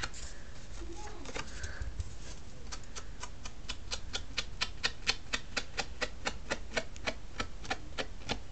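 Rapid tapping of an ink sponge dabbing ink onto the edges of a cardstock layer: a few scattered taps, then from about two and a half seconds in a steady run of three to four taps a second.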